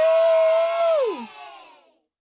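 Young people cheering over an online call, led by one long held 'woo' that rises, holds for about a second and then falls away, with fainter voices fading out under it.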